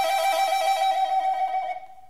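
Solo recorder holding one high, sustained note with a fast wavering ripple, then fading away near the end.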